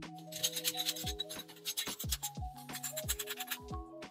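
Background music with falling bass notes, over tap water splashing and rattling on a metal dental instrument cassette in a stainless-steel sink.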